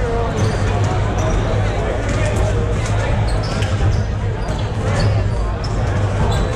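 Several basketballs bouncing on a hardwood gym floor during team warm-ups, under steady crowd chatter in a large hall.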